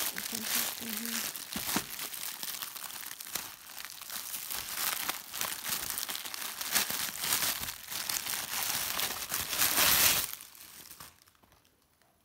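Clear plastic wrapping around handbags crinkling and rustling as it is handled by hand. It makes a dense, continuous crackle that is loudest just before it stops, about ten seconds in.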